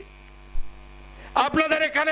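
Steady electrical mains hum, a low buzz with a stack of even overtones, during a pause in the speech. About a second and a half in, a man's amplified speaking voice starts again over it.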